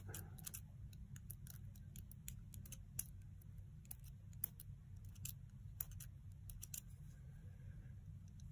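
Faint, irregular little clicks and ticks as a plastic poking tool pushes tiny waste pieces out of an intricate die-cut cardstock shape, with a few sharper clicks in the middle.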